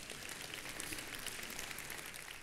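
Faint applause from a church congregation, many hands clapping lightly.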